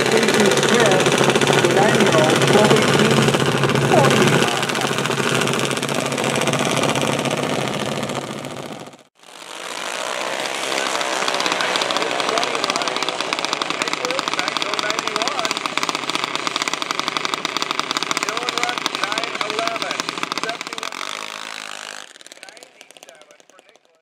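Junior dragsters' small single-cylinder engines running with a rapid firing beat, voices mixed in. The sound cuts off abruptly about nine seconds in, then the engines are heard again as the cars race down the strip, fading away near the end.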